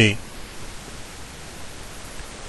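Steady hiss of background noise in the recording, even and unchanging, just after a man's voice finishes a word at the very start.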